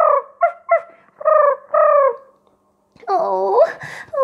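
A woman's voice making squeaky creature noises for little bug puppets: five short high yips, each falling in pitch, then after a brief pause a higher, rising squeal about three seconds in.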